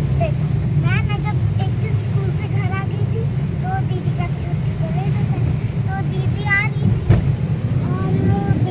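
Car cabin noise on a rain-soaked road: a steady low rumble of tyres and engine, with faint voices talking underneath. A single sharp knock sounds about seven seconds in.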